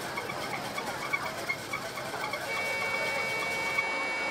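Bus-stand traffic noise with a vehicle's reversing beeper pulsing rapidly at a high pitch. About two and a half seconds in, the pulsing gives way to a steady, high, continuous electronic tone that holds.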